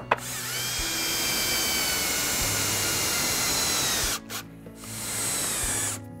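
Cordless drill boring pilot holes into a pressure-treated southern pine 2x6 cleat. One run of about four seconds, its motor whine sagging slightly in pitch under load, then a short pause and a second run of about a second.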